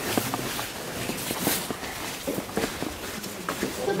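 Footsteps of several people walking over a sandy cave floor, irregular soft scuffs and steps with clothing rustling.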